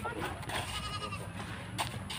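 A high-pitched animal call in the background, held steady for about half a second, followed near the end by a single sharp knock.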